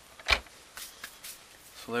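Handling noise from a large RC monster truck: one sharp knock about a third of a second in, then three fainter clicks, as the truck's front wheel is let go.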